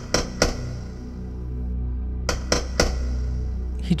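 Sound effect of a loud tapping on a car's side window glass: two sets of three quick taps about two seconds apart, over a low, steady background music drone.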